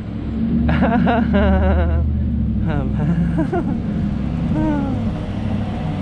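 Steady low rumble of wind and street noise picked up while riding a bicycle, with a voice speaking or humming indistinctly in short phrases over it and a laugh at the very end.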